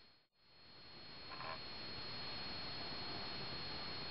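Steady low hiss with a thin, constant high-pitched whine: the recording's own background noise. The sound drops out completely for a moment just after the start, at an edit fade.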